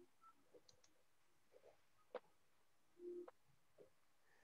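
Near silence on a video call: faint room tone with one small click about two seconds in.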